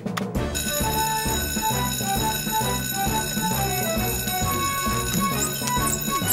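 Fire station alarm bell starts ringing about half a second in and rings steadily, over upbeat cartoon action music with a steady beat.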